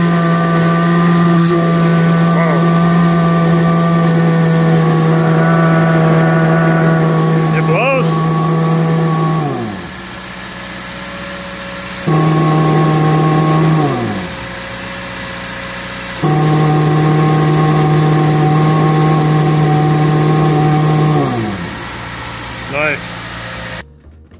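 Toyota Previa SC14 supercharger, belt-driven off an idling Subaru FB25 flat-four, whining steadily while its electromagnetic clutch is engaged. About ten seconds in the clutch is released and the whine falls in pitch as the rotors spin down, leaving the engine idling. The clutch is then switched on twice more: each time the whine starts abruptly and winds down again when it is released.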